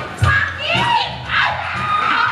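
Several voices shouting together in high, sliding cries over a thudding rap backing beat, which drops away about half a second in.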